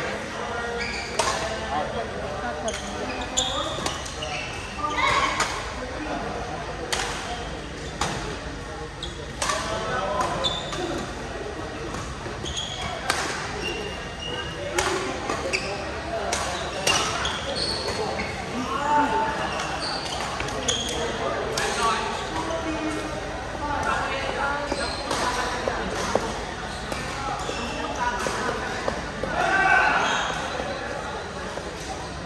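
Badminton play in a large echoing sports hall: repeated sharp cracks of rackets striking the shuttlecock and short high squeaks of shoes on the court floor, over a constant chatter of voices from players and spectators.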